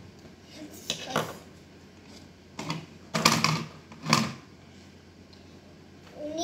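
Hard plastic toy doctor's tools clattering and knocking as they are handled, in four short clattery bursts over a few seconds.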